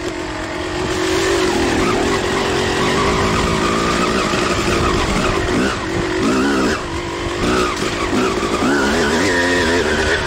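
Suzuki RM250 single-cylinder two-stroke dirt bike engine under way, its revs rising and falling with the throttle and briefly cut several times in the second half.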